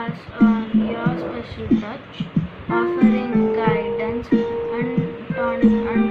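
A child singing, with notes held steady for about a second at a time, over plucked-string accompaniment.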